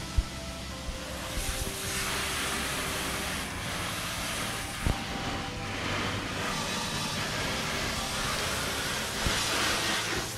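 Garden hose spray hissing steadily as water rinses a pickup truck's painted side panels, growing stronger about a second and a half in. Two brief knocks stand out, one just after the start and one about halfway through.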